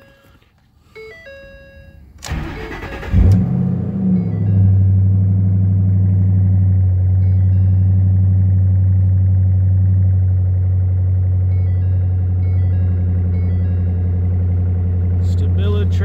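2010 Ford Mustang started from cold after sitting a few days: the starter cranks for about a second, the engine catches, and it settles into a steady idle.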